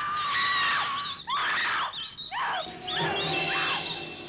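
Horror film soundtrack: a long, high scream that ends about a second in, then a string of short shrieks that rise and fall in pitch. Low, steady music tones come in near the end.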